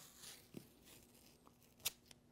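Very quiet handling of athletic tape being pulled over and smoothed onto pre-wrap on an ankle: faint rustling, then one brief sharp crackle of tape near the end.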